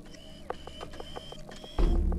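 Sci-fi droid sound effects: rapid mechanical clicking, about eight clicks a second, over steady electronic tones. A low boom comes near the end.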